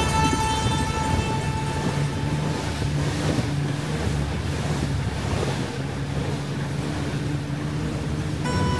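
Steady road and engine noise heard from inside a moving car: a low hum under an even rush of tyre and wind noise. Faint music fades out about a second in.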